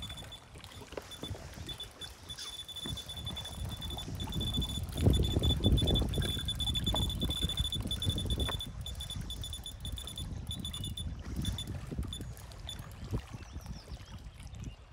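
Electronic bite alarm on a pike rod beeping as line is drawn through it: scattered beeps at first, then a fast, almost unbroken run of beeps in the middle that thins out again toward the end, the sign of a pike taking the bait. Wind rumbles on the microphone, loudest in the middle.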